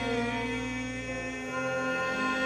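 Live band playing long sustained chords, with the chord changing about one and a half seconds in.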